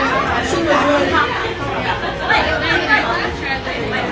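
People talking, overlapping chatter with no clear words.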